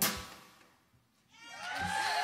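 A band's final chord rings out and dies away into about half a second of near silence. Then the audience starts clapping and whooping, swelling up about a second and a half in.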